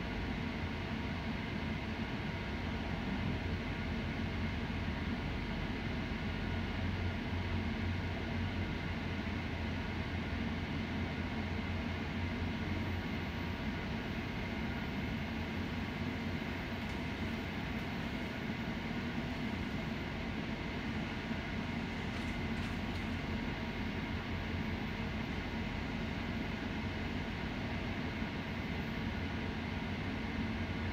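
Steady rumble of a GO Transit commuter train rolling slowly into a station, heard from inside the passenger coach, with a few faint clicks from the wheels partway through.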